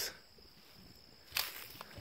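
Near silence with outdoor room tone, then about halfway through one short scuffing rustle of a footstep in the garden vegetation, followed by a faint tick or two.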